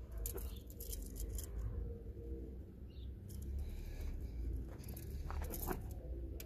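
Quiet handling noise: a few scattered clicks and scuffs over a low steady rumble, with a small cluster of clicks near the end.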